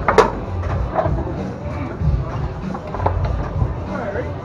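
Background music with a steady bass beat, with one sharp crack just after the start as the foosball is struck hard, followed by a few lighter clacks of the ball and rods.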